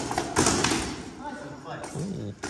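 Armoured sword fight: a steel sword striking a shield and plate armour, one sharp impact about half a second in, followed by quieter clanking of armour as the fighters move.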